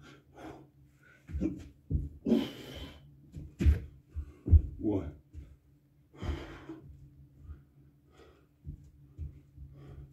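A man breathing hard during burpees, with several forceful, noisy exhales and gasps, and a few low thumps of landings on a rubber floor mat in the first five seconds.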